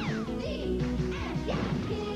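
Upbeat pop theme music with cartoon sound effects: a falling sweep right at the start, then rising sweeps and a crash.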